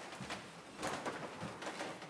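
Congregation getting up from wooden pews: soft rustling and shuffling with a few faint thuds and creaks.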